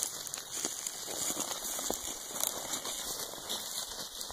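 Footsteps crunching through thin snow and dry grass, a steady crackling rustle with a few sharper snaps.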